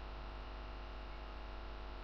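Faint steady electrical mains hum with a buzz of evenly spaced overtones and a light hiss underneath, unchanging throughout.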